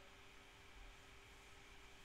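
Near silence: faint steady room tone and microphone hiss.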